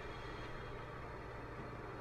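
Faint steady room tone: a low hum under a soft even hiss, with no distinct event.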